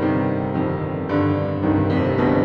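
Solo piano playing an improvised piece: sustained chords ringing, with new notes struck about three times.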